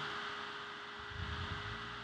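Room tone of a home recording: a steady hiss with faint constant tones, and a brief faint low rumble about a second in.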